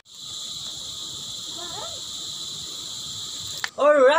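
A steady, high-pitched chorus of insects drones without a break, then cuts off abruptly near the end.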